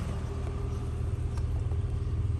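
Honda Accord's engine idling, a steady low hum.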